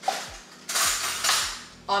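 Metal kitchen utensils clattering: a sharp clink just after the start, then two stretches of rattling about a second long, as of spoons or cutlery being picked through.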